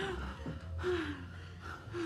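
Breathy gasps and short moans from a couple kissing, about one a second, each sliding down in pitch, between heavy breaths.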